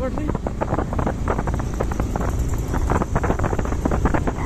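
Motorcycle engine running while riding over a rough, badly surfaced road, with wind buffeting the microphone and frequent short knocks and rattles from the bumps.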